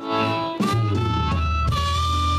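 A blues band starting a song: a harmonica played into the vocal mic holds long notes over bass and drums.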